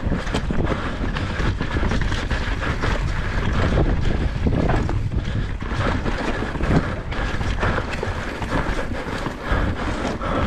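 Wind buffeting the camera microphone as a mountain bike rolls fast down a loose dirt trail, with the tyres rumbling over the ground and frequent short clicks and knocks from the bike rattling over rocks and roots.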